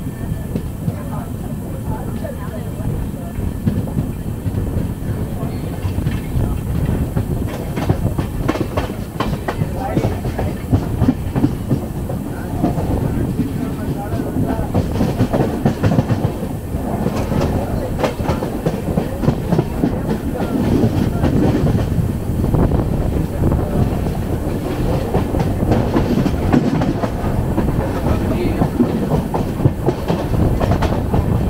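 Passenger train running at speed, heard from beside a coach window: a steady rumble of wheels on rail with frequent clickety-clack clicks as the wheels pass over rail joints.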